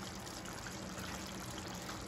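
Chicken curry cooking in a steel pot on a gas stove: a soft, steady hiss with no distinct bubbles or knocks.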